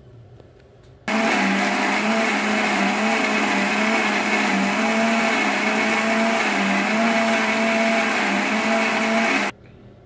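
Electric mixer grinder switched on about a second in and running steadily for about eight seconds, grinding appam batter, then cut off suddenly near the end.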